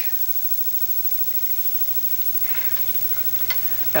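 Quiet stirring in a frying pan of sautéing onion, garlic and scotch, with a brief soft scrape about two and a half seconds in and a single click of the utensil on the pan about a second later, over a steady low hum.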